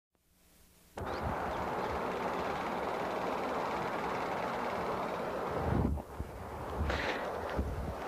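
Steady rushing noise of freeway traffic with wind on the microphone, starting abruptly about a second in. A few low rumbles come near the end.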